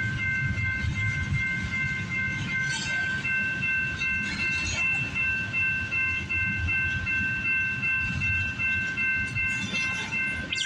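Double-stack intermodal freight cars rolling past a grade crossing with a steady low rumble of wheels on rail. A railroad crossing bell rings continuously over it as a rapid, even, high-pitched ringing.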